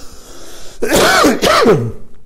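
A man coughing: a breathy intake, then two loud voiced coughs about half a second apart in the second half.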